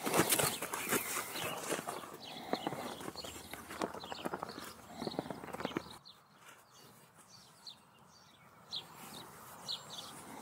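A horse's hooves stepping and scuffing in arena sand as she moves about, stopping suddenly about six seconds in when she stands still; after that only a few faint ticks.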